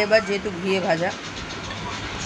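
A woman speaking for about the first second, then a steady background hiss with a faint low hum.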